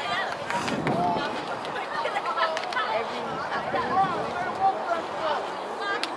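Indistinct chatter of several people talking at once, with a few faint sharp clicks.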